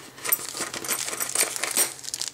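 Plastic zip bags of small metal mounting parts being handled: crinkling plastic with light clinking of the metal pieces, a quick run of small clicks.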